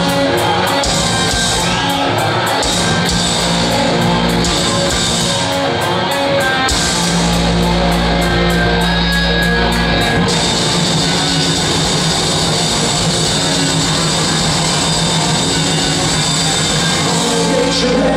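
Punk rock band playing live in a hall: distorted electric guitars, bass guitar and drums. The bass and full band come in heavier about seven seconds in, with a steady cymbal wash from about ten seconds.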